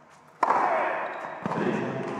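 A tennis ball bouncing on an indoor hard court between points, the bounce ringing out in the echoing hall.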